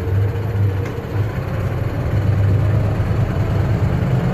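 A bus's diesel engine running steadily in a low gear as the bus drives along, heard from inside the cab. Its low hum dips about a second in and then grows slowly louder.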